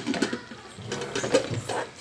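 A ladle clattering and scraping in a metal pressure-cooker pot of fried mutton and urad dal as liquid is added for the gravy, in irregular clicks and rattles.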